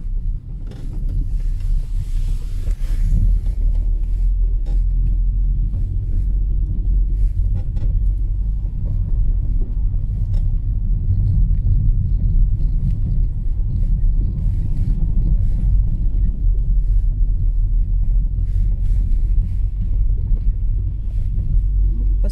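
Car driving slowly along a rough, rutted, partly snow-covered street, heard from inside the cabin: a steady low rumble of engine and tyres with scattered light knocks and clicks.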